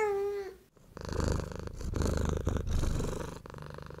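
A cat's meow, held and then dropping slightly as it ends about half a second in, followed after a brief pause by about two and a half seconds of fast, rattling cat purring.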